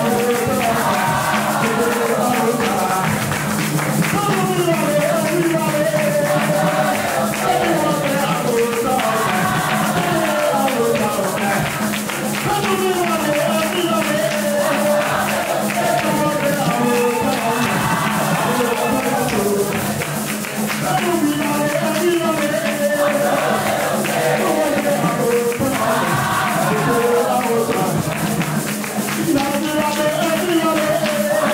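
Church congregation singing a worship song together, led by a singer on a microphone, over a fast, steady percussion beat with hand clapping.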